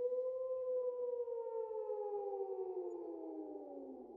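A siren-like sound effect: a pitched wail that starts abruptly and glides slowly downward over about four seconds, fading as it falls.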